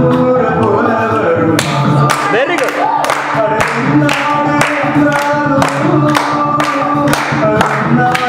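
A man singing a Tamil film song into a microphone over a backing track, with a steady beat of about two strokes a second coming in strongly about one and a half seconds in.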